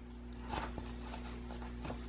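Faint rustling and a few soft taps of paper and cardstock being handled as embroidery thread is pulled through a punched hole in a journal cover, over a steady low hum.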